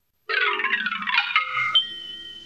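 A short, bright chime-like jingle, a quick run of notes starting about a quarter second in and lasting about a second and a half, then a held high note and soft sustained music near the end.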